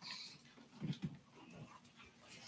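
Faint footsteps and shuffling on a carpeted platform, with a pair of soft low thumps about a second in.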